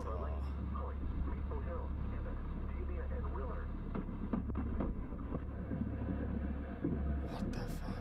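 Car interior heard through a dashcam microphone in a storm: a steady low hum, broken by several sharp cracks a second or more apart as lightning strikes the car.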